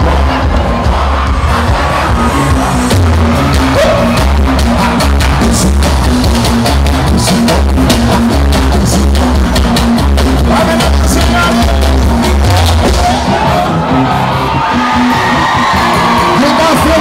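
Live band music at a constant high level: a repeating bass line under dense drum hits, with little singing.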